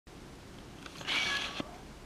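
A domestic cat meows once about a second in: a short, high-pitched meow lasting about half a second, followed by a small click. The owner takes it as a plea for food.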